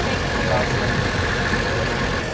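Steady rumble of idling car engines through an open car window, with a faint voice briefly about half a second in.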